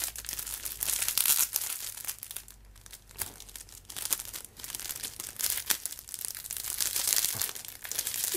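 Thin clear plastic film crinkling and tearing as it is pulled by hand off a rolled rubber sheet, in irregular rustling spurts with a short lull about two and a half seconds in.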